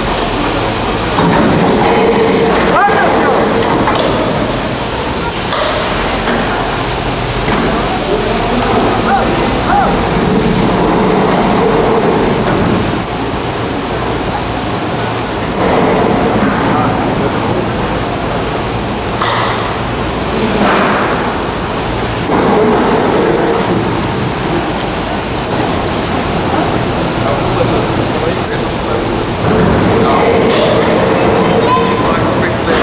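Station machinery of a 1979 Montaz Mautino six-seat detachable gondola lift running: a steady mechanical rumble from the tyre conveyor and the cabins rolling along the station rails, with occasional knocks. Voices can be heard over it.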